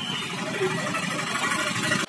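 Street traffic noise: vehicle engines running steadily, with faint voices of passers-by mixed in.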